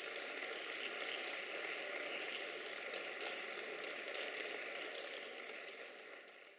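Audience applauding at the end of a cobla's performance: a steady patter of many hands clapping that fades away near the end.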